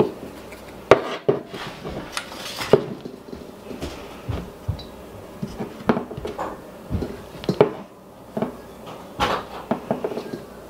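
Irregular clicks and knocks of a stainless steel mixing bowl and a metal jerky gun barrel being handled while ground beef is scooped out and packed into the gun.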